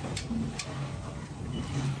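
Steady low machine hum with a few faint clicks from an automatic wire-winding machine laying wire into a plastic rack to form an induction-cooker heating plate.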